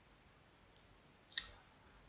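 Near silence with a single short, sharp click about a second and a third in.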